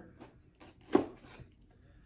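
Knife blade cutting through the seal sticker on a cardboard box: a few light scratches, then one sharp click about a second in.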